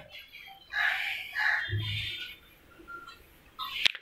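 Faint bird calls in the background, scattered through the first half, with a single sharp click just before the end.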